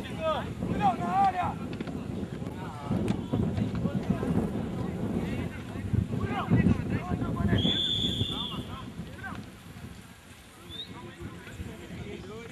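Voices calling out across an outdoor football pitch, with wind buffeting the microphone. About seven and a half seconds in, a referee's whistle sounds one blast of about a second.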